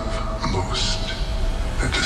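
Trailer sound design: a steady deep rumble under a dense wash of noise, with a spoken line over it and a few sharp hits near the end.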